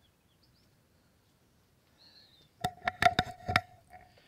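Handling noise from an action camera being moved and turned around: a quick run of about six sharp knocks and clicks, with a brief ringing tone, starting a little past halfway after near quiet.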